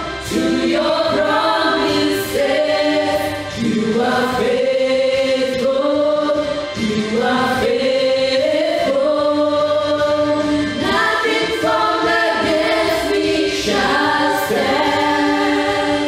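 A small group of mixed voices singing a gospel worship song together into handheld microphones, in long held phrases.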